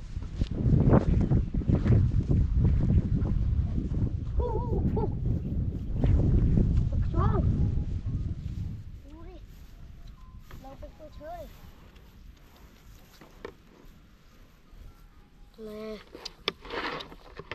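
Wind buffeting the microphone outdoors, a loud low rumble for the first eight seconds or so, with a few short rising-and-falling calls over it. It then drops to a much quieter background with a few brief chirps.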